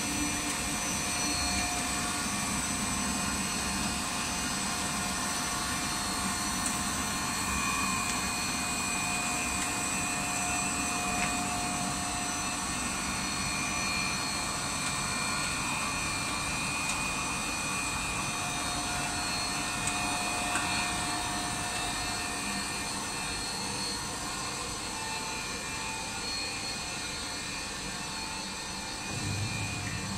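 A running WPC decking profile extrusion line: its motors and machines make a steady, unbroken hum with several steady whining tones over it. A deeper hum comes in near the end.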